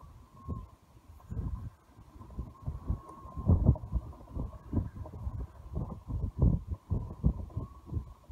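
Wind buffeting the microphone in irregular low gusts, loudest about three and a half and six and a half seconds in.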